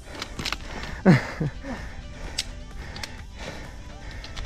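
Running footsteps and trekking-pole taps on a loose, rocky mountain trail, heard as scattered short clicks. About a second in comes a short, loud vocal sound falling in pitch, followed by a smaller one.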